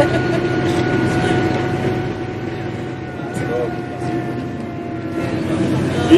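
Steady engine and road noise heard from inside a moving vehicle, with a thin steady whine running through it.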